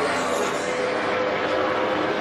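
NASCAR Sprint Cup car's V8 engine running flat out at full throttle on a qualifying lap, a steady engine note at an even level.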